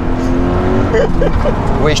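Subaru BRZ's flat-four boxer engine running steadily on a track straight, heard from inside the cabin.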